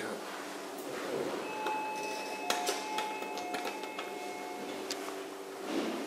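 Office elevator machinery heard through closed landing doors: a steady hum, with a faint whine that steps between two pitches for about three seconds midway and a few light clicks.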